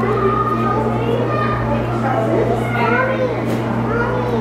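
Overlapping chatter of a crowd of visitors, children's high voices among them, with no clear words, over a steady low hum.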